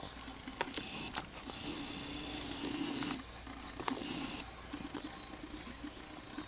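A dog breathing quietly, with a few faint clicks.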